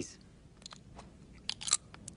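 A few faint clicks, then a brief burst of sharp, crunchy clicking about one and a half seconds in.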